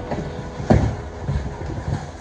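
Low rumbling movement and handling noise as a person moves about a small room with a camera and backpack, with one sharp knock about three-quarters of a second in.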